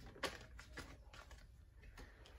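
Faint, light clicks and taps of tarot cards being handled and drawn from the deck, the sharpest about a quarter second in.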